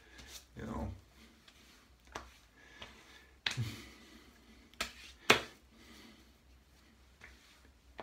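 Hands patting and slapping aftershave onto wet-shaved skin: a few sharp slaps, the loudest a little past five seconds in.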